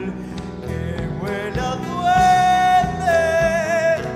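Live folk band music with accordion, acoustic guitars and bass guitar, carrying a long held melody note about halfway through.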